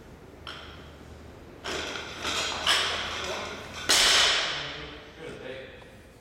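Loaded Olympic barbell with bumper plates clattering and banging: three impacts about a second apart, the last the loudest, each followed by the metal bar and plates ringing as it dies away.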